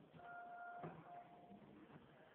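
A steady, faint high tone from the elevator, cut by a sharp click, then sounding again briefly.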